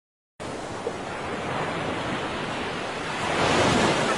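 A steady rushing noise like surf or wind starts just after the beginning and swells louder near the end.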